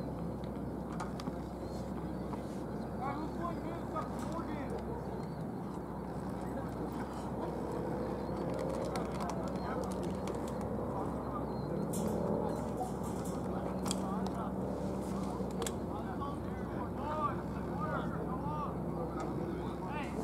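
Indistinct, distant voices of players calling to each other across an open sports field, over a steady low hum. A few sharp knocks stand out around the middle and again near the end.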